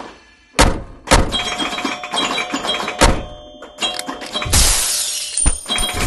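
Animated logo-outro sound effects: after a brief silence, a few sharp hits over steady electronic tones, then a loud rush of hiss near the end.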